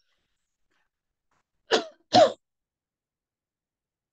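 A woman coughing twice in quick succession, about halfway through.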